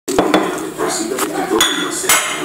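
A ceramic dinner plate knocking and clinking on a table as it is handled, several sharp knocks with a short ringing clink about one and a half seconds in.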